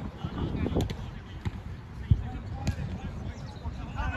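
Wind rumbling on the microphone, with a few sharp thuds of a football being kicked or bouncing on artificial turf, the loudest about two seconds in, and faint distant voices.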